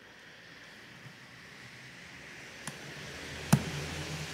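Hands handling and pressing a sticky webcam ribbon cable along the edge of a laptop display panel: a faint rustle of handling that grows slowly, with a small click and then a sharper click near the end.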